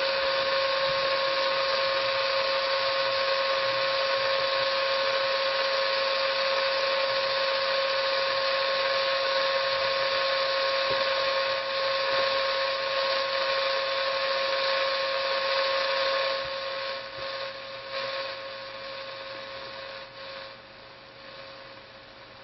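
Radio receiver's speaker hissing with the noise bridge's signal, a steady tone running through the hiss. About sixteen seconds in, the hiss starts to fade in steps and ends much quieter as the bridge is turned toward its null.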